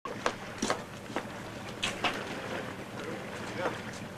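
Steady background noise broken by about six sharp knocks or clicks at irregular intervals, the loudest near the start.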